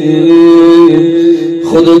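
A man chanting a religious supplication in a sorrowful voice through a microphone, holding one long, steady note for about a second and a half before breaking into the next syllable near the end. A steady low drone sounds beneath the voice.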